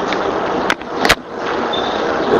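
Steady, fairly loud hiss of background noise, broken by two sharp clicks about two-thirds of a second and one second in.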